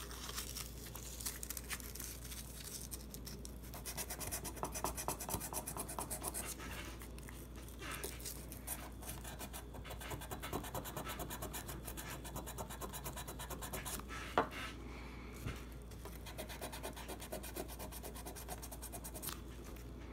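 Sandpaper scrubbing back and forth on the steel slide of a Taurus 709 Slim pistol, in quick scratchy strokes, stripping off the black finish to bare metal. A single sharp tap about two-thirds of the way in.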